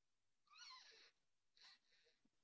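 Near silence on the meeting audio, with a faint, brief wavering high-pitched squeak about half a second in and a fainter one near the end.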